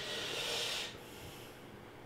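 A man's breath drawn in with a glass of beer at his lips: a soft hiss lasting under a second. After it only faint room tone remains.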